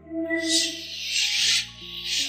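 Three swelling rustles of bedding, like a duvet being rubbed and shifted, over soft background music with held notes.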